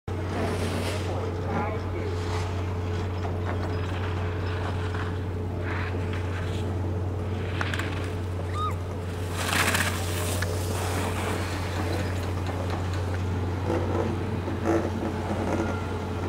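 Ski edges scraping and hissing on packed snow as a giant slalom racer carves through the gates, the loudest hiss about nine and a half seconds in, over a steady low hum. Faint voices come and go in the background.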